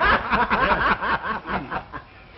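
Laughter: a quick run of short chuckles that stops near the end.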